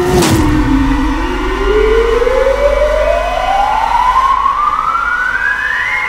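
A dramatic suspense sting: a sudden hit, then a single tone rising steadily for about six seconds over a low rumble, a riser from a TV drama's background score.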